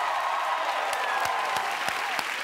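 Game-show studio audience applauding and cheering, with shouting voices over dense clapping, in response to a scored answer on the board.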